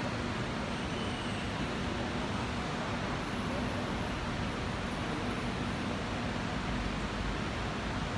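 Steady room noise: a continuous even hiss with a low steady hum underneath, and no ball strikes.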